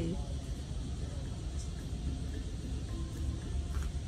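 Outdoor background noise: a steady low rumble with faint, distant voices.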